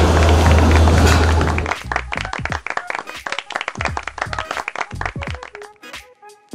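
Loud live court noise over a steady low hum, cut off abruptly under two seconds in by background music made of sharp percussive hits, with a few held notes near the end.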